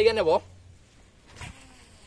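A man speaking briefly over a low steady hum. The voice stops after a fraction of a second and the hum cuts out a little later, leaving quiet.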